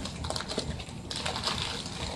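Packing material in an opened shipping box rustling and crinkling as it is handled and moved aside: a run of small crackles that turns brighter and hissier about halfway through.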